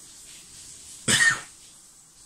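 A man's single short cough about a second in.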